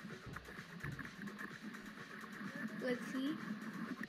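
Water sloshing and churning around an action camera at surface level in the surf as a wave breaks, with a faint voice about three seconds in.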